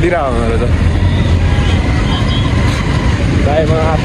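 Motorcycle riding in city traffic: a steady low rumble of engine and wind noise. A voice is heard briefly just after the start and again near the end.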